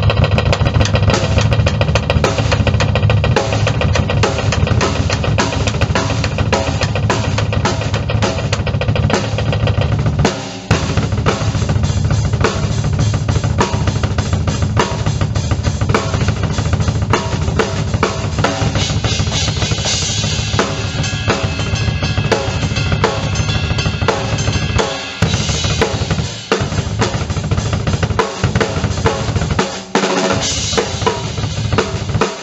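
Double bass drum pedal played on a kick drum as a fast, continuous stream of strokes, at a tempo of about 210, with the rest of the drum kit heard over it. Brief breaks come about ten seconds in and twice in the last five seconds.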